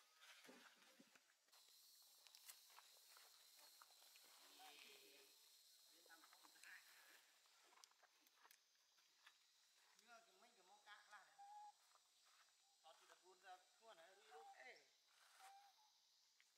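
Very faint human voices talking in two short stretches, over a steady high hiss.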